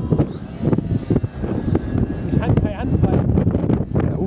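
Wind buffeting the microphone, with the thin high whine of the Multiplex FunCub's electric motor rising in pitch about a third of a second in, holding steady, and easing slightly near the end.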